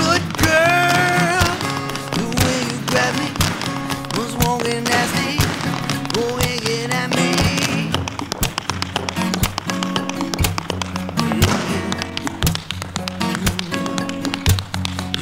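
Two dancers' tap shoes striking a wooden stage floor in quick rhythmic patterns over acoustic pop music with a steady bass line. The taps stand out more in the second half.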